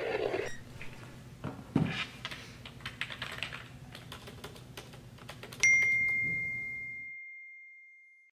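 Typing on a laptop keyboard: quick, irregular key clicks, with a dull thump about two seconds in. About six seconds in, a single loud ding sounds and rings on, fading slowly: a phone's message alert.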